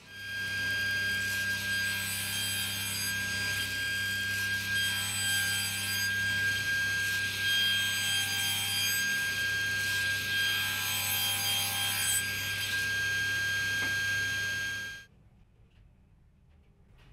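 Table saw running and cutting angled ends on wooden strips fed through on a sled, a steady whine with a low hum and rising and falling cutting noise. It stops abruptly about a second before the end.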